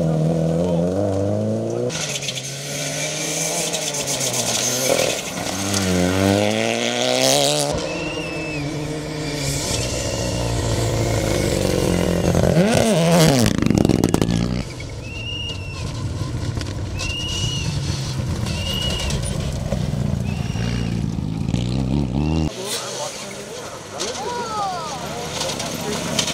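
Rally cars on a gravel stage: engines revving hard and rising and falling through gear changes as they slide through corners and pass by, with gravel and dust thrown from the tyres. Several passes follow one another, with a sweeping pass-by about halfway through.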